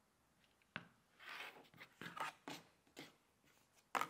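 Faint rotary cutter and handling sounds on a cutting mat: a sharp click about a second in, then a few short scratchy scrapes and rustles as the blade cuts through a pieced fabric strip set and the cut piece and acrylic ruler are moved.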